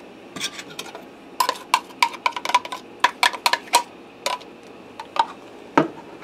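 A spatula and plastic measuring cup tapping and scraping against a saucepan as ketchup is scraped out into it: a run of sharp taps with a brief metallic ring, coming fast in the middle and more sparsely near the end.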